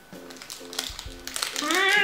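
Soft background guitar music, a short plucked figure repeating. Near the end a woman gives a long appreciative 'mmm' through closed lips while eating, its pitch rising and then falling.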